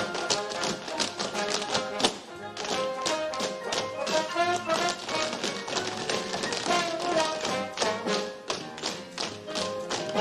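A troupe of tap dancers' tap shoes striking the stage floor in a rapid, rhythmic clatter of taps, over a pit orchestra playing a swing tune.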